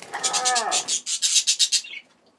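Budgerigars squawking and chattering in a rapid, harsh string of high-pitched calls, loudest in the second half. In the first half, a lower drawn-out sound falls in pitch, like a person's groan.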